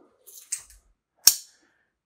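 A single sharp click a little over a second in: a folding pocket knife's blade snapping open and locking. A brief faint hiss comes before it.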